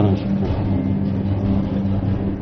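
A low, steady droning hum from the game show's background tension music bed.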